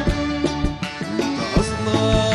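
Instrumental passage of a Sudanese song: a piano accordion plays a held melody over steady, regular drum beats.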